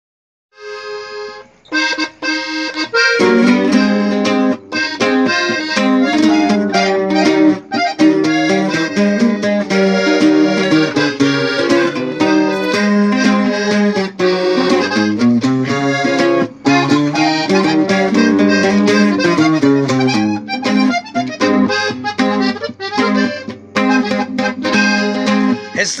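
Instrumental introduction of a corrido in norteño style: accordion carrying the melody over guitar, with a bass line coming in about three seconds in. Singing begins at the very end.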